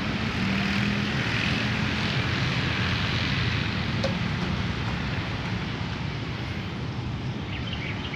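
A steady engine drone with a low hum, slowly fading toward the end.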